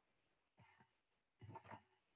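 Near silence: room tone, with two faint, brief sounds about half a second and a second and a half in.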